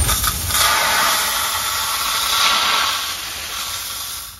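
Water rushing out of a gate valve on a standpipe outlet as the line is flushed of sediment, a steady loud hiss that eases off near the end.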